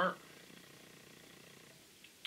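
The end of a man's spoken word, then near silence: faint steady room hiss.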